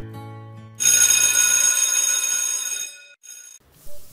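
Notification-bell sound effect: a bright bell ringing starts suddenly about a second in and dies away over about two seconds, after a softer low tone fading at the start.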